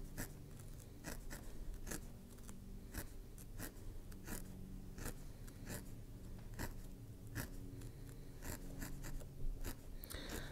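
A single felting needle repeatedly stabbing wool into a felting pad, faint crisp pokes about twice a second, irregularly spaced, as black wool is felted into place for an eye.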